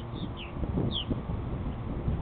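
Purple martins giving four short, falling chirps in the first second, over a low rumble of wind on the microphone.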